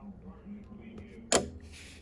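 A single sharp click, as of a small hard object set down or tapped on a tabletop, about a second and a half in, followed by a brief hiss, over a low steady hum.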